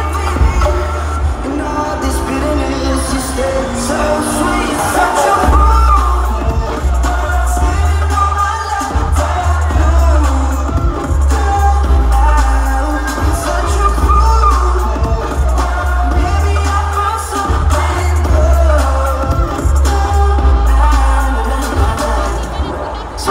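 Electronic dance music from a DJ set played loud over a festival sound system, with a sung vocal and heavy bass, heard from within the crowd. The bass thins out about a second in and comes back in full about five seconds later.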